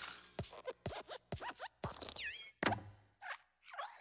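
Pixar logo sound effects of the Luxo Jr. desk lamp hopping: about four quick springy bounces, each a sharp click with a falling squeak. Then comes a heavier thump as it squashes the letter I, followed by squeaky creaks of its metal joints.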